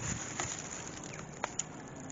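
Quiet outdoor ambience on an allotment, with a few faint short clicks.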